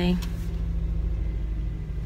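Car's engine running, heard from inside the cabin as a steady low rumble.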